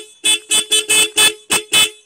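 The twin disc horns of a Royal Enfield Classic 350, pressed in seven quick short toots. Both horns sound together as a two-note chord, quite loud.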